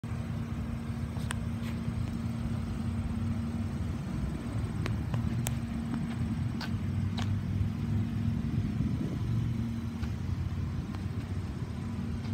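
A V6 engine idling steadily, a low even rumble with a constant hum, with a few light clicks scattered through.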